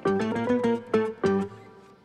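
Background music: a melody of plucked-string notes in quick succession, tailing off near the end.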